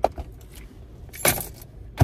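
Light metallic jingling and clinking of small metal objects being handled, with a short click at the start and a louder jingle about a second in.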